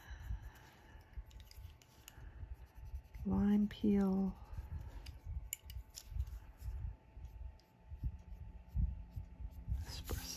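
Colored pencil shading on paper, a run of small scratchy strokes. A person hums two short notes about three seconds in, and paper rustles at the very end as the hand sweeps across the page.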